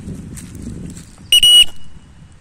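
A single short, loud, high-pitched whistle blast about a second and a half in, a steady tone with no rise or fall. Under it and before it come the scuffs of footsteps on a dirt track.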